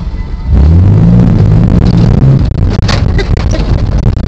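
1996 GMC Jimmy's 4.3-litre V6 revving hard, its pitch rising, as the truck is gunned about half a second in to drift on a snowy street. It stays loud and rough on the dashcam microphone.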